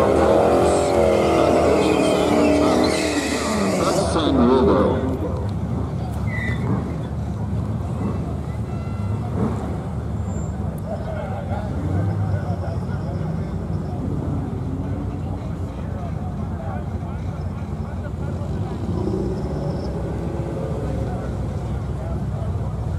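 A drag car's engine revving up and back down over a hiss of tire noise for the first four seconds or so, then a steady low engine rumble with faint background voices while the cars wait at the line.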